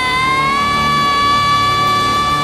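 A young girl's singing voice holds one long high note, rising slightly about half a second in and then sustained, with the backing band playing underneath in a live performance of the song.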